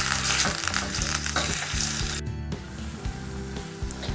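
Chicken mince and ginger-garlic paste sizzling in hot oil in a steel karahi, stirred with a spatula that scrapes the pan, as the mince cooks off its raw liquid. The sizzle breaks off abruptly a little after two seconds in and comes back fainter.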